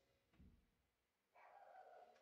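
A dog barking faintly in the background: one drawn-out bark or whine starting about two-thirds of the way in, after a soft low thump.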